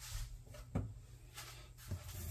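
A steady low hum with four faint knocks and rubbing sounds spread over two seconds: hands handling bread dough and setting things down on a countertop.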